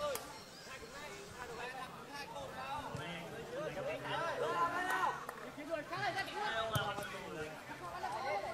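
Faint, scattered shouts and chatter of players and onlookers at a small-sided football match, with a couple of faint knocks.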